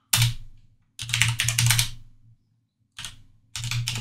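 Computer keyboard being typed on in bursts: a short flurry of keystrokes at the start, a longer run of about a second, then two quick flurries near the end.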